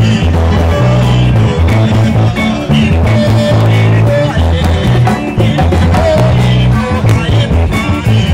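Congolese dance band music with a steady beat: a bass guitar line repeating low down and bright electric guitar lines weaving above it, over a drum kit.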